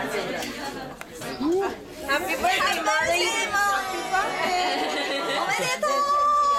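Several people talking at once: overlapping conversational chatter of a small group in a room.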